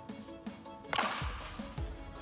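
Softball bat hitting a softball: one sharp crack about a second in, with a short decaying tail, over background music.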